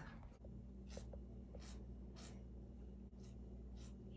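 A cat wearing a plastic cone, licking its bandaged paw or the cone: about five soft, scratchy rasps, roughly one every half second to a second, heard faintly over a steady low hum.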